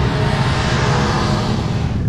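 A car engine running steadily nearby, with a rush of noise that swells in the middle and fades again.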